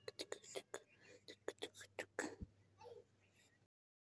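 A quick, irregular run of short mouth clicks and smacks, like lips and tongue, over about two and a half seconds. A short voice sound slides down in pitch near three seconds, and the sound cuts off suddenly just before the end.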